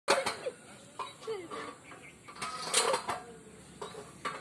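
Metal chains of a playground swing clinking and knocking irregularly as the swing moves, with a few short pitched squeaks.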